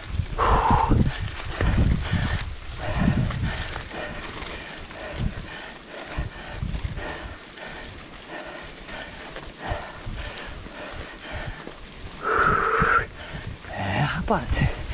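Low rumbling and knocking from a mountain bike riding over a rocky dirt road, picked up by a handlebar-mounted camera and strongest in the first few seconds. A short voice-like call sounds about twelve seconds in.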